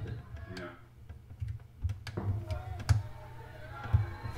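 A lull with a steady low hum, faint fragments of speech in the background, and several sharp isolated clicks spread through it, about five in all.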